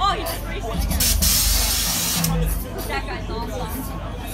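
A vehicle engine running low beneath voices, with a sharp hiss lasting about a second that starts a little over a second in.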